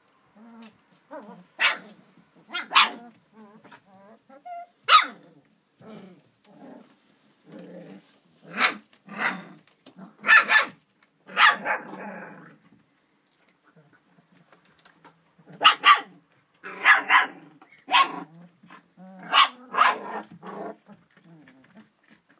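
Young puppies yapping and growling as they play-fight, in short, sharp, high yaps that come in bunches with low grumbles between them, and a lull about midway.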